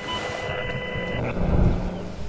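A low, steady rumbling drone fades in from silence. A few thin, steady high tones sit over it and stop about a second in. It reads as the opening sound bed of a documentary clip, before its music and narration start.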